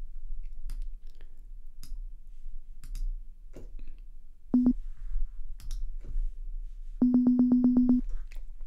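Computer mouse clicks, then a short synthesizer note about halfway through. Near the end a VPS Avenger software synth note is retriggered rapidly by its arpeggiator, about ten times a second on one pitch.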